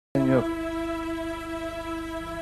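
A synthesizer holds one long steady note, entering with a short downward pitch bend just after the start.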